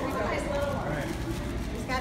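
Indistinct voices of a group talking over a steady low background rumble in a shop.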